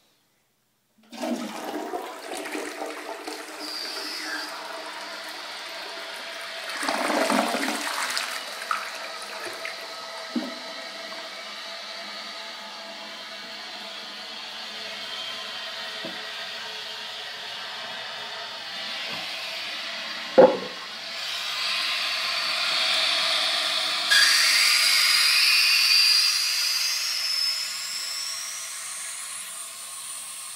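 A Universal-Rundle toilet flushing: water rushes in about a second in, then the tank refills through an old float-ball ballcock valve with a steady hiss. A sharp knock comes about two-thirds of the way through, and in the last few seconds the refill hiss grows louder with a high whistle that wavers in pitch.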